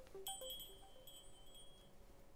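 A high metallic chime, struck several times in quick succession about a quarter second in, rings out and fades over about a second and a half. The last few soft notes of a keyboard melody die away under it.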